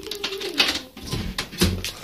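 Phone handled roughly: rubbing and knocking against its microphone, several sharp knocks through the second half, after a brief low hum near the start.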